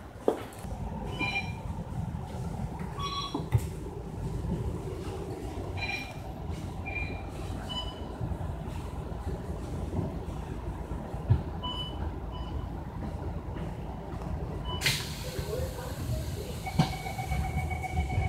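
Interior of an MAN Lion's City DD (A95) double-deck bus: a steady low engine and road rumble with light rattles and squeaks from the body. A sudden hiss comes about fifteen seconds in, and a short steady tone sounds near the end.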